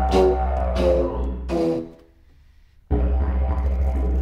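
Didgeridoo drone with shifting overtones and sharp breathy accents, played with a contrabass flute. The sound breaks off for about a second in the middle, then the drone comes back.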